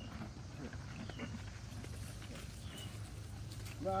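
Horses at a fence chewing corn husks, with faint crunching and ticking, and a few short, high bird chirps over a steady low hum.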